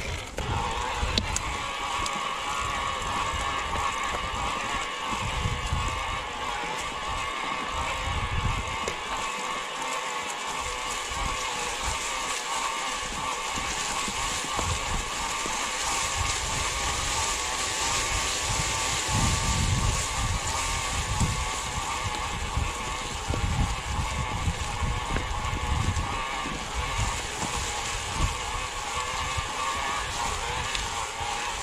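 Electric mountain bike climbing a forest track: a steady motor whine over tyre noise on dirt and dry leaves, with uneven low rumbles of wind on the microphone.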